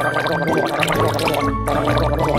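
Cartoon gargling sound effect, water bubbling in the mouth, over background music.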